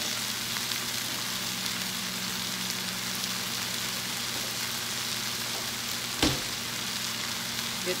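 Barbecue-sauced chicken and onions sizzling steadily in a hot cast iron skillet, with a steady low hum underneath. A single sharp knock about six seconds in.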